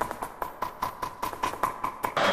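Faint, even ticking, about five clicks a second, over a faint steady high tone, with no speech.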